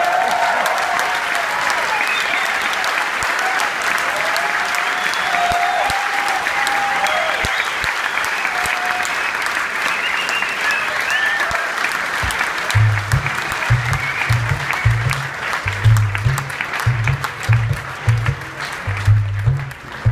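Concert audience applauding and cheering, with shouts over the clapping. About two-thirds of the way in, low drum strokes start under the applause in an uneven rhythm.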